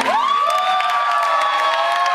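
Audience cheering as the song ends: two long, high-pitched screams rise at the start and are held, over scattered clapping.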